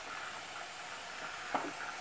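Bed bug steamer hissing steadily as its wand nozzle is worked slowly over a plastic toy tricycle.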